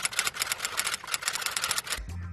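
Rapid typewriter key clicks, about a dozen a second, used as a sound effect as on-screen text is typed out.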